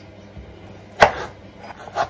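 Chef's knife chopping a peeled potato into cubes on a wooden cutting board: one sharp chop about halfway through and another right at the end.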